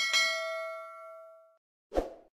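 Subscribe-animation sound effect: a bright notification-bell ding that rings and fades out over about a second and a half, followed near the end by a short rush of noise as the bell icon pops away.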